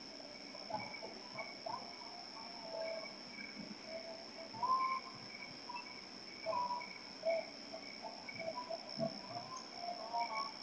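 Night insect chorus: crickets trilling steadily, a high continuous trill with a slower pulsing trill beneath it, over scattered short lower-pitched calls. The calls are loudest about halfway through.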